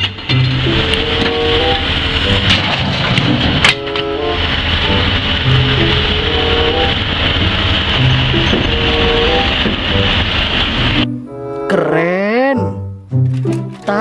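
Background music over steady machine noise from a wheeled scrap-handling excavator working a scrap pile with its grapple. The machine noise cuts off suddenly about three seconds before the end.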